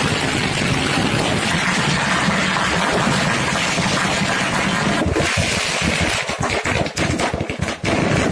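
A string of firecrackers going off: a dense, unbroken crackle that breaks up into rapid separate bangs after about five seconds.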